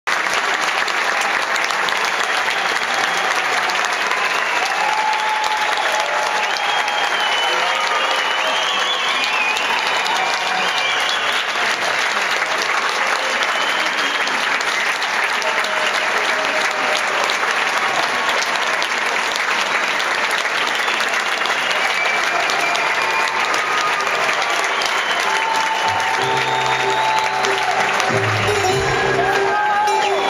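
Concert audience applauding steadily, with voices calling out over the clapping. Low instrument notes start near the end.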